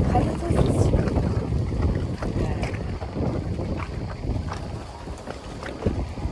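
Wind buffeting a phone's microphone: a low rumble that rises and falls in gusts, easing off about five seconds in.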